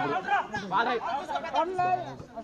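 Crowd chatter: many spectators' voices talking and calling out over one another.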